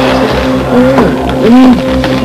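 Background score music holding a steady low chord, with a short voice-like sound rising and falling about a second and a half in.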